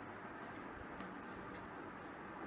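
Faint steady room noise with a few light ticks.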